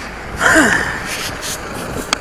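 A person's short gasp-like vocal sound, falling in pitch, about half a second in.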